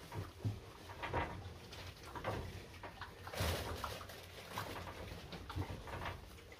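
Young piglets grunting in short, irregular bursts, with a louder, noisier burst about three and a half seconds in.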